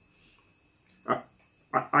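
A man speaking hesitantly: about a second of quiet, then a short "I", then another "I" as he starts talking again near the end.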